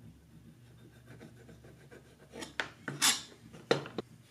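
Craft knife blade cutting and scraping through a tiny wooden plug against a plastic cutting mat: faint ticks at first, then a few short scraping strokes from a little after two seconds in, the loudest near three seconds.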